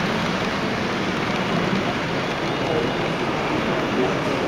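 Steady din of a busy exhibition hall, with many voices chattering at once. A model passenger train rolls along its track through it.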